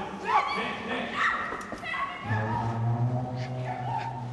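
People's voices crying out in short calls that rise and fall in pitch, without clear words. About halfway through, a low steady hum comes in under them.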